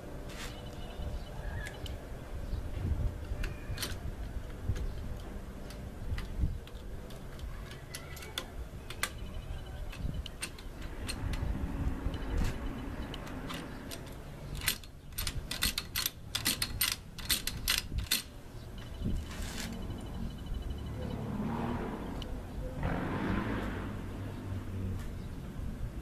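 Metal clicks and rattles of shotgun parts being handled during cleaning and oiling. Sharp single clicks are scattered throughout, with a quick run of about a dozen sharp clicks a little past the middle and a rustling near the end.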